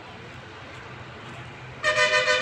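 Low road traffic noise, then a vehicle horn starts near the end, a loud, steady two-tone honk.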